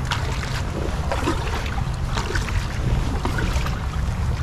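Paddle strokes from a kayak on calm water: the blades dipping and splashing, with a steady low rumble of wind on the microphone.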